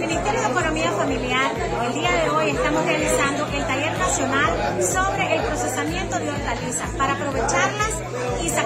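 A woman talking over background music with a steady beat, with chatter from a group in a large room behind her.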